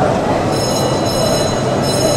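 Overhead crane running in a power plant building: a steady, loud mechanical rumble with a high, ringing whine that swells and fades about once a second.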